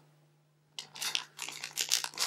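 Crinkly foil blind-bag packet rustling and crackling as fingers rummage inside it for the toy. It starts abruptly a little under a second in, as a quick run of sharp crackles.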